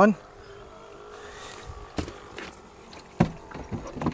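Small electric pump of a rechargeable Sun Joe sprayer running after being switched on, a faint steady hum. Two sharp knocks come about two and three seconds in, the second louder.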